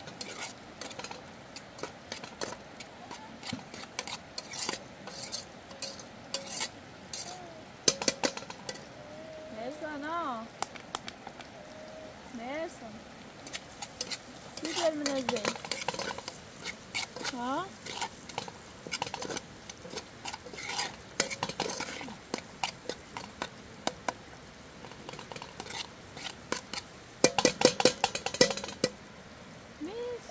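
A spoon stirring and scraping food frying in a large aluminium pot over a portable gas burner, with irregular clicks against the pot and sizzling throughout. Near the end comes a quick run of louder clicks.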